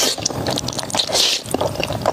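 Slurping spicy fire noodles in a thick sauce into the mouth. There are two long slurps, one at the start and one a little past a second in, with many small mouth clicks of chewing between them.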